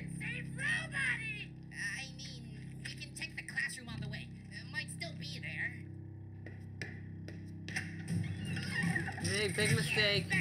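Cartoon character dialogue over low, steady background music, with the music growing louder and busier about eight seconds in.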